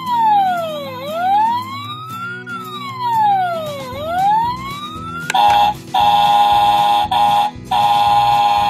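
Toy fire truck's electronic siren wailing, falling and rising twice, then switching to an electronic fire bell ringing in bursts with short breaks from about five seconds in.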